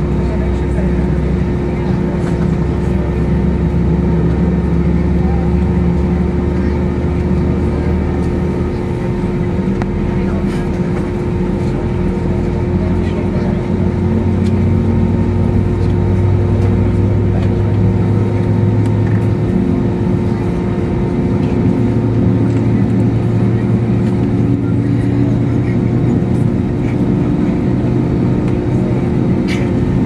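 Airbus A321's IAE V2500 engines running at low ground thrust, heard from inside the cabin over the wing: a steady drone with a constant hum. The engine note steps up a little in pitch about a third of the way in and again past the middle.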